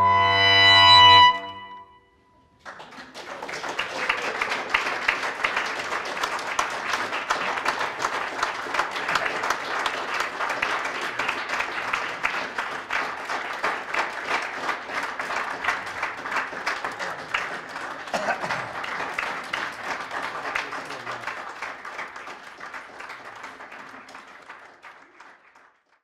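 The last held chord of clarinet, bass clarinet and harp ends about a second in. After a brief silence, an audience applauds steadily for about twenty seconds, and the applause fades out near the end.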